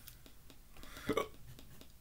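A brief, quiet vocal sound from a man about a second in, among faint scattered clicks in a quiet room.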